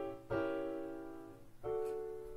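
Piano playing sustained block chords, each struck and left to fade: one about a third of a second in and another near the end. They are the fully diminished seventh chord of the dominant (vii°7/V) and its resolution to the dominant (V), in G major.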